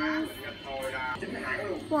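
Speech: a person talking, ending with a short "What?".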